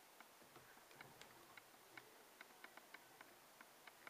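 Near silence broken by faint small clicks and ticks at irregular intervals, about three a second, from fingers handling thread and hackle at a fly-tying vise.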